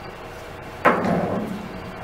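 A single dull knock about a second in, trailing off in a brief scrape.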